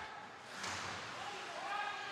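Ice hockey rink sound: skates and sticks scraping on the ice, with a distant high-pitched shout starting about a second in.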